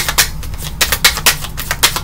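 Tarot cards being shuffled: a quick, irregular run of crisp snaps and clicks.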